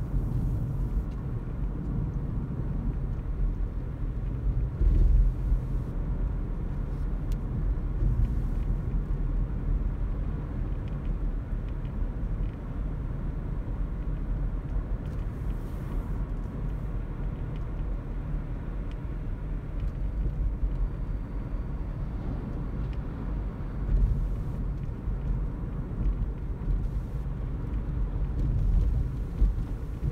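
A Toyota Auris Hybrid driving, heard from inside the cabin: a steady low rumble of the car on the road, with brief louder swells about five seconds in and again near 24 seconds.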